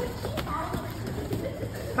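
A few soft, padded knocks from children sparring: gloved punches landing on head guards and chest protectors, with bare feet moving on foam mats, over faint background voices.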